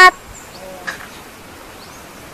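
Steady outdoor background hiss with a few faint, high bird chirps and a short tap about a second in.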